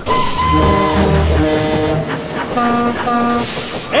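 Instrumental background music: a short phrase of held notes moving up and down over a low bass line, with a high hiss underneath.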